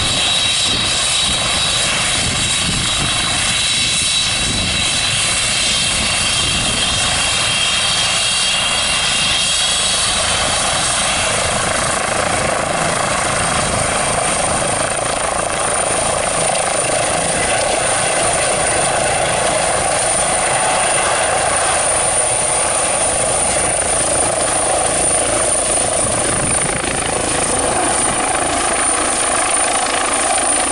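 Eurocopter EC135 air ambulance helicopter running at full power, its turbines and rotor making a loud steady noise as it lifts off and climbs away. Through it runs a high whine that changes to a higher pitch about halfway through.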